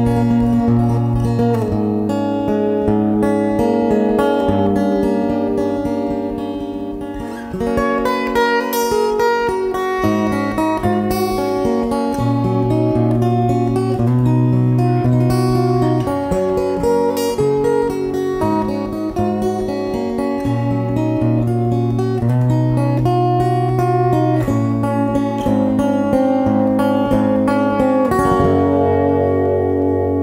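Acoustic guitar playing a long instrumental passage of picked and strummed notes over held low bass notes, settling into a ringing chord in the last couple of seconds.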